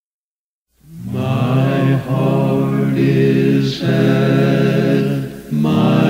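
Silence, then a little under a second in an a cappella gospel quartet starts a song in four-part harmony, holding long sustained chords with short breaths between phrases.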